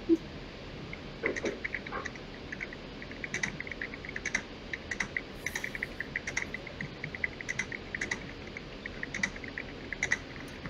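Rapid, irregular clicking, several clicks a second in uneven runs, typical of computer keyboard typing and mouse clicks, with a few sharper clicks standing out.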